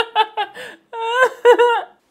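A man laughing hard: a run of quick, high-pitched giggles, then a short break and longer drawn-out laughs.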